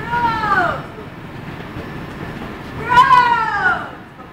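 A person's high-pitched wailing cry, twice: each a single drawn-out call falling in pitch, under a second long, the first right at the start and a louder one about three seconds in.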